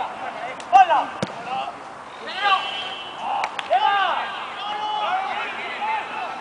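Football players shouting short calls to each other across the pitch, several in a row. A few sharp knocks of the ball being kicked come in the first second or so.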